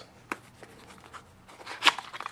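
Faint handling noise: light rubbing with a few short clicks, the sharpest just before the end.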